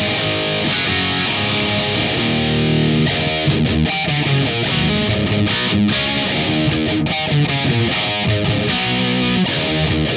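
Distorted electric guitar riff played through a Marshall DSL100 all-tube amplifier running on unregulated 121-volt wall power. The player finds the feel and tone stiff at this voltage, compared with the amp's optimum of 117 volts.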